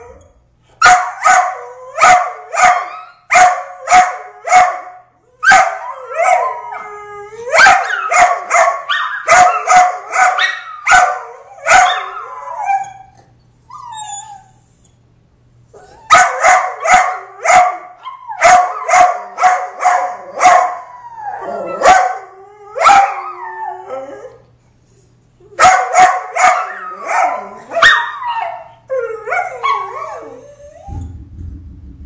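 Two small dogs barking in fast bouts of sharp barks, mixed with drawn-out wavering howls. The barking stops twice for a few seconds: about halfway through and again near the end.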